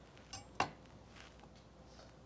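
Two light taps close together on a cutting board as cut cucumber-wrapped rolls are handled, the second one sharper; otherwise quiet kitchen room tone.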